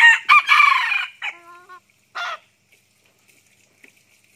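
Red junglefowl rooster crowing once: a loud, clipped crow of about a second that trails into a short held note and ends abruptly, followed by a brief second call about two seconds in.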